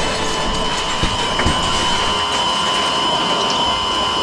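Battery-powered toy train's motor and gears running with a steady whine. There are a few small clicks from the plastic parts.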